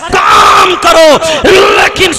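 A man preaching in a loud, raised, declaiming voice through a microphone and PA system.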